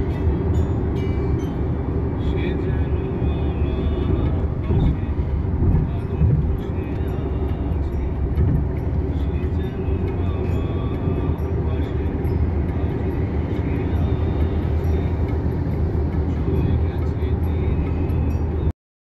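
Steady low road and engine rumble inside a moving car's cabin at highway speed.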